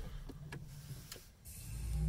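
Clicks inside a plug-in hybrid car's cabin as it is switched on, then a low hum swelling up near the end.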